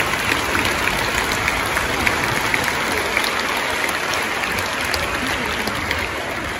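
Large audience applauding steadily, many hands clapping at once.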